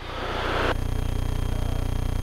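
Beechcraft Musketeer's 160-horsepower four-cylinder engine and propeller droning steadily in level cruise at about 75% power, heard in the cockpit through the headset intercom. A hiss for about the first three-quarters of a second gives way to a steady hum.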